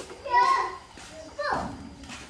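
Children's voices: a high-pitched child's call about half a second in, then a cry that falls sharply in pitch about one and a half seconds in.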